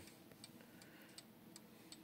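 Faint ticking of a mantel clock's Franz Hermle mechanical pendulum movement, a few light ticks a second.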